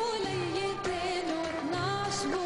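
A woman singing a Lebanese mijana, her voice sliding and ornamenting around each note, over instrumental accompaniment.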